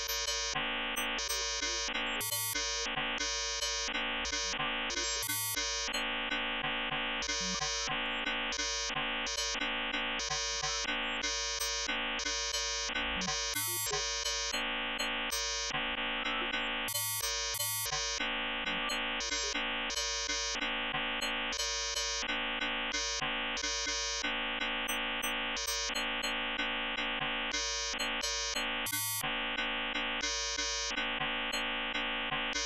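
Buzzy electronic synthesizer tones from a Max 8 patch: a dense, held chord that pulses evenly about twice a second, with bright upper tones cutting in and out.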